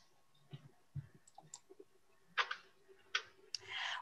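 A pause with faint room tone and a few scattered small clicks, then two short, louder sharp noises and a brief hiss just before speech resumes.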